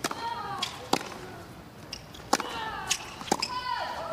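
Tennis rally: about five sharp pops of the ball off rackets and court. Three of them are each followed by a player's loud grunt that falls in pitch.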